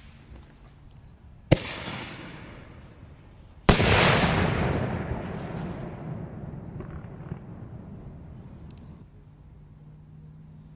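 Two aerial firework bursts about two seconds apart. The second is louder and rolls away in a long echo that fades over several seconds.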